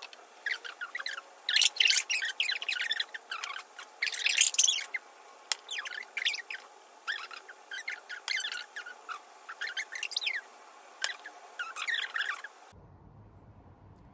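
Sped-up room audio: irregular bursts of quick high-pitched chirps and squeaks that cut off suddenly near the end.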